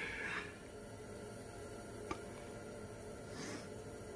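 Quiet room tone inside a small enclosed hunting blind: the tail end of a laugh fades out at the start, and a single faint click comes about two seconds in.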